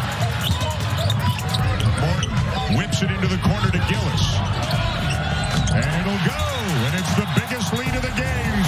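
A basketball dribbled on a hardwood court, its bounces heard through steady arena crowd noise of many voices shouting and cheering.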